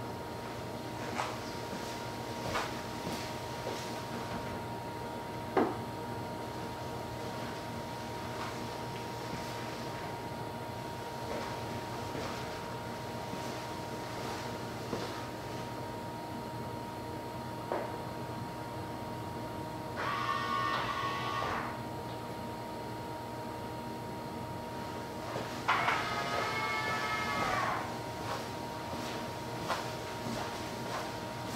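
A 2018 Tesla Model 3 charging at full rate (32 A) on a NEMA 14-50 outlet gives only a quiet, steady hum with a thin high tone, and no whine. A few light clicks sound through it, along with two short pitched, wavering sounds about twenty and twenty-six seconds in.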